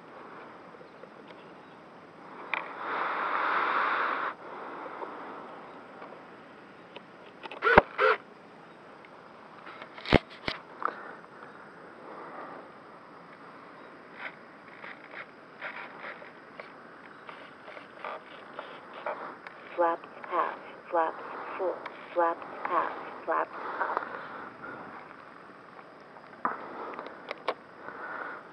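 Faint, distant-sounding voices, with a short burst of rustling noise early on and a few sharp clicks.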